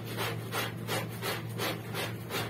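Wet clothes being scrubbed by hand in a plastic basin, fabric rubbed against fabric in regular strokes, about three a second.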